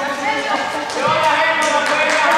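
Voices talking in a large sports hall, with a few short sharp knocks in the second half.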